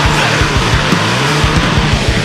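Instrumental passage of a metalcore song: heavily distorted low guitars over fast, dense kick drumming, with no vocals.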